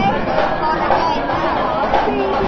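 Crowd chatter: many voices talking at once in a brief lull between the band's drum beats.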